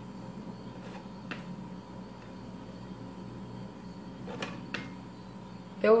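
Quiet room tone with a low steady hum and a few faint, soft clicks as chocolate biscuits are set by hand onto a layer of cream.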